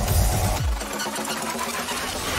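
Dramatic trailer soundtrack, music mixed with sound effects; the deep bass drops away under a second in, leaving a busy higher-pitched texture.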